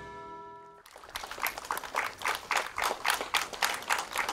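The last chord of a news theme tune fades out, then a small crowd applauds with steady, irregular hand-clapping.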